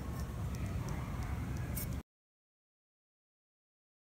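Low, steady room noise with a few faint light clicks for about two seconds, then the sound cuts off suddenly to dead silence.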